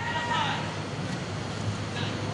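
Steady murmur of a spectator crowd in an indoor arena, with a faint voice calling out near the start.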